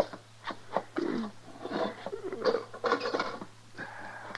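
Radio sound-effect footsteps of boots on wooden boards, a handful of sharp, uneven steps, with creaking wood in between.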